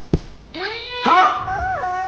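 A short knock just at the start, then a high, squeaky cartoon voice making a questioning "huh?" whose pitch slides up and down.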